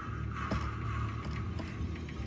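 Claw machine and arcade background: a steady low hum under a held electronic tone that fades out about three quarters of the way through, with a faint click about a quarter of the way in.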